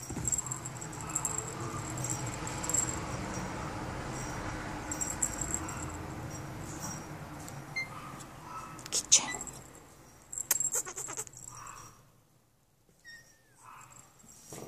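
Muffled background voices and room noise, followed by several sharp clicks and taps about nine to eleven seconds in, and one short high falling squeak near the end.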